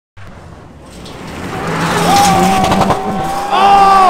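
Rally car on a gravel stage coming closer at high revs, growing steadily louder, its engine holding a steady high note; the note shifts about three and a half seconds in and falls away sharply at the end.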